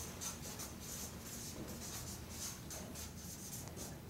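Marker writing on a paper flip chart: a quick run of short strokes as words are written out, over a low room hum.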